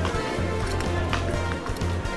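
Background music with a low bass line and a steady beat.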